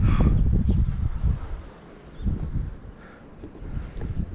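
Wind buffeting the camera microphone, a heavy low rumble for about the first second and a half that then drops to lighter gusts.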